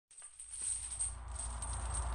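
Intro sound effect of a jingling, chime-like metallic shimmer over a steady low rumble, fading in over the first half second.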